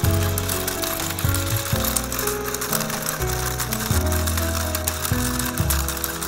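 Battery-powered walking toy horse, its plastic gear mechanism clicking rapidly and steadily as the legs move, with a simple melody playing at the same time.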